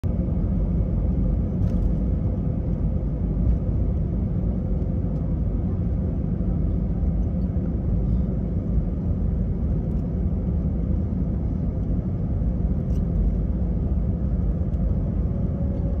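Steady low rumble inside the cabin of an Airbus A320-family airliner taxiing, its jet engines running at low power, with a faint steady hum over it.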